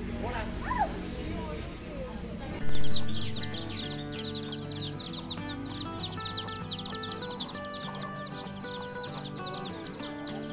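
A brood of chicks peeping rapidly and continuously over background music. The peeping starts suddenly about a quarter of the way in and runs on until near the end.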